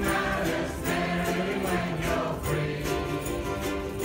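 A large group of ukuleles strummed in a steady rhythm while many voices sing together.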